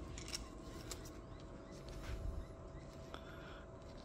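Faint handling sounds: a few small clicks and light knocks as a steel bolt is lifted out of its container with pliers and handled in rubber gloves, over a faint steady hum.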